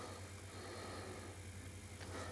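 Faint, steady low hum of room tone, with no distinct events.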